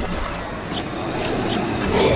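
Horror-trailer sound design: a low, noisy rumble with a few short glitchy clicks, building again near the end.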